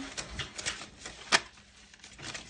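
Paper dollar bills rustling and flicking as they are handled and slipped into a clear plastic cash envelope, with one sharp click a little over a second in.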